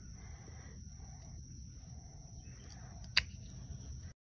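Bypass pruning shears snipping a thorn off a rose stem: one sharp, short snip about three seconds in, over a quiet outdoor background.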